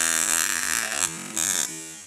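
Homemade taser built from a high-voltage coil, buzzing as its spark arcs between two wire electrodes. The buzz runs for about a second and a half, then fades.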